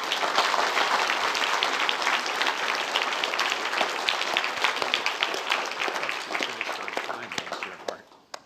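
Audience applauding: many hands clapping in a dense, steady patter that dies away near the end.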